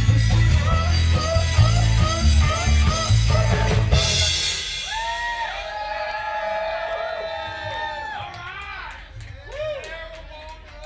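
Live funk-rock band with electric bass, guitar and drums playing the last bars of a song, ending on a final crash about four seconds in. The crowd then whoops and yells, with a few handclaps near the end.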